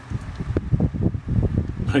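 Microphone handling noise: low, irregular rumbling and bumps that are about as loud as the speech around it.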